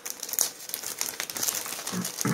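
Plastic packaging crinkling and rustling as it is handled close by: a dense run of quick little crackles. A cough comes at the very end.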